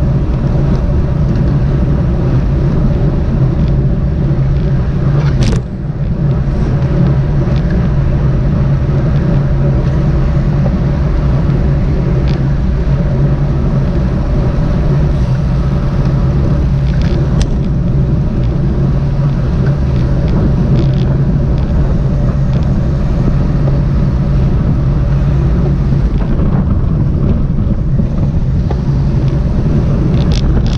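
Steady rush of wind and road noise on a bicycle-mounted camera moving in a tight pack of road racers at about 35 km/h, with a low steady hum and a few sharp clicks.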